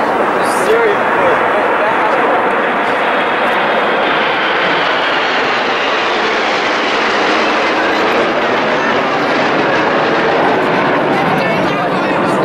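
Formation of military jets flying overhead, a steady jet engine noise with no breaks. Crowd voices can be heard underneath.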